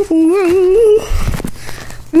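A person humming one wavering note for about a second, rising a little near the end, followed by a low bump of the phone being handled.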